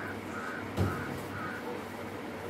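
A bird gives four short calls, about two a second, with a single thump a little before the middle.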